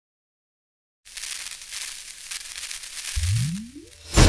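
Intro sound effect for an animated channel logo: silence for about a second, then a crackly hiss, with a low tone sweeping upward near the end.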